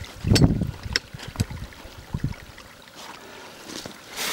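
A body-grip (Conibear-style) beaver trap being set by hand and foot: a low thump, then several sharp metal clicks as the springs are held down and the trigger dog is latched against the pan, set to a hair trigger.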